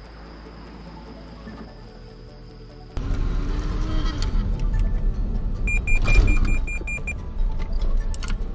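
Cabin sound of a 2020 Toyota Yaris in an automatic emergency braking test. Road and drive noise cuts in suddenly about three seconds in, with a hum that falls in pitch as the car slows. Around the middle comes a rapid run of high warning beeps, about five a second, from the collision warning.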